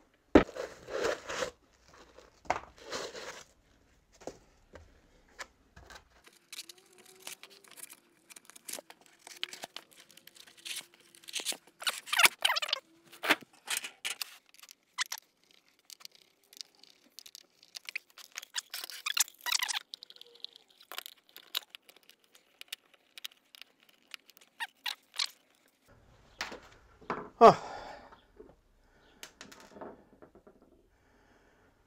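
Foam inserts being torn and prised out of a wooden instrument box: irregular tearing, crunching and scraping, broken up by small clicks and knocks of wood and metal fittings.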